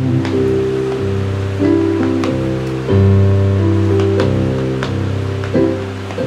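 Electronic keyboard playing an instrumental passage of held chords over a bass note, changing chord about every second. A fan's steady hiss runs underneath.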